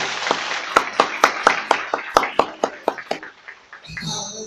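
Audience applauding: a dense patter of clapping that thins into a few scattered separate claps and dies away near the end.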